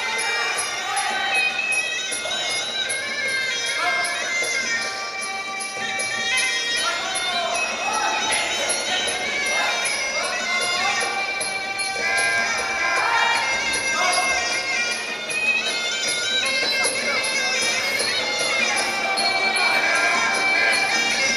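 Traditional Muay Thai fight music (sarama): a reedy pipe playing a bending, wavering melody over small hand cymbals, with voices underneath.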